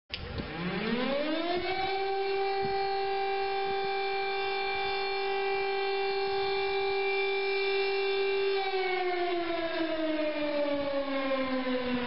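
A siren winds up in pitch over about a second and a half, holds one steady wail for about seven seconds, then starts slowly winding down near the end.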